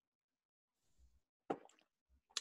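Near silence, broken by one short sharp click about one and a half seconds in.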